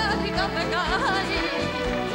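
A woman's voice singing a wavering, ornamented melodic line with vibrato over live band accompaniment, in a Spanish popular song.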